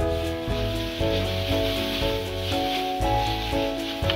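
Background music with onions and ginger-garlic paste sizzling faintly in hot oil in a pan, a spatula stirring them.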